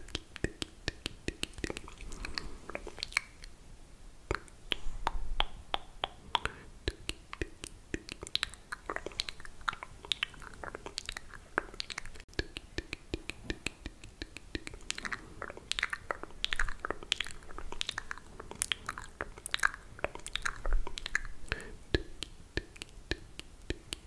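Close-miked ASMR toothbrushing sounds: a dense stream of quick, crisp clicks and scratchy brushing strokes from a toothbrush with toothpaste, mixed with wet mouth clicks.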